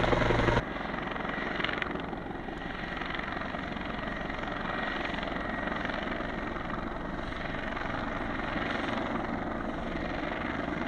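Four-bladed rescue helicopter's rotor and turbine: loud and close at first, then dropping suddenly about half a second in to a steadier, more distant rotor sound as it works low over the canyon.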